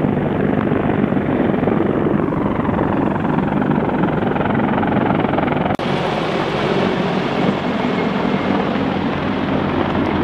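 Loud, steady rotor and engine noise of military tiltrotor aircraft, a rushing noise over a low drone. About six seconds in it changes abruptly, and the aircraft noise continues from MV-22 Ospreys flying overhead.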